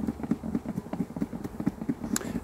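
A lidded plastic food tub holding honeybees and powdered sugar being shaken by hand for a varroa sugar roll: a fast, even rattle of knocks, several a second, as the contents are thrown against the walls to dust the bees and knock the mites off.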